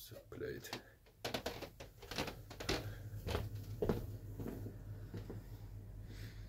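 Scattered soft knocks and clicks at irregular intervals over a low steady hum, with a faint, indistinct voice.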